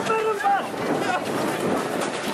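A voice calling out briefly at the start, then a steady rush of outdoor noise with wind on the microphone.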